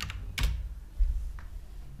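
Computer keyboard keystrokes: a few separate key clicks, one sharp and loud about half a second in, over a steady low hum.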